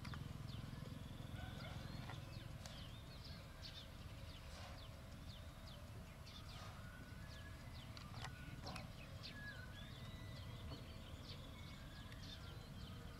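Quiet outdoor ambience: many small birds chirping in short, quick calls, over a low steady rumble.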